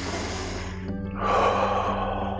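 A man takes a deep breath in, then lets a long breath out through pursed lips from about a second in, over soft background music.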